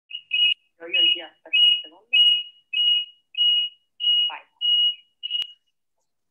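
An electronic beeper sounding about nine short, high-pitched beeps of one pitch, evenly spaced a little under two a second, like a timer or alarm. A faint voice is heard under the first few beeps, and a sharp click comes with the last beep.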